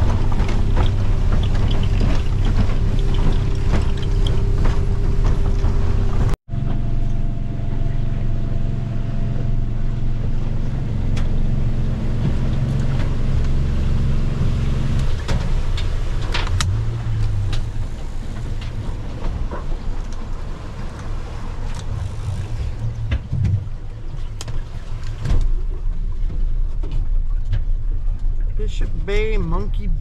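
Boat engine running steadily under way, with wind and water noise over it. The sound cuts out for an instant about six seconds in, and the engine's steady hum drops away about halfway through, leaving rougher wind and water noise.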